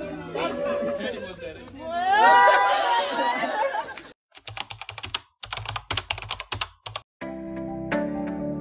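A group's voices at a birthday party for the first few seconds. Then a rapid, irregular run of sharp clicks like typing on a computer keyboard for about three seconds, and music with sustained tones starts near the end.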